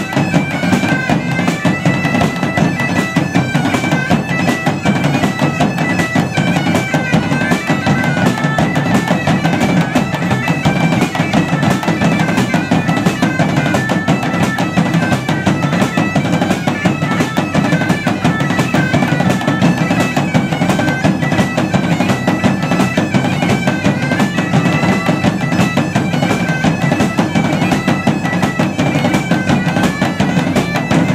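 Two bagpipes play a lively tune together over their steady drone, with a large drum and a drum kit beating along without a break.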